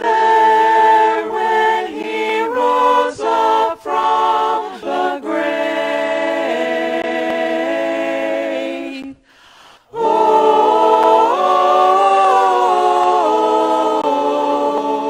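Small mixed vocal ensemble of men and women singing together in harmony, holding and moving between chords. About nine seconds in the voices stop briefly, then come back in together on a new chord.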